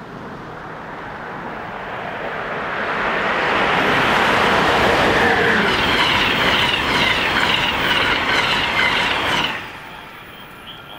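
Amtrak passenger train of Amfleet coaches passing close by at speed. The rumble builds, is loudest as the cars go by, with a rapid repeated high-pitched wheel noise, and cuts off suddenly as the last car passes.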